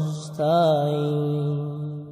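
A Bangla Islamic devotional song: a solo voice sings long held notes. The line breaks off just before half a second in, and a new held note starts and fades toward the end.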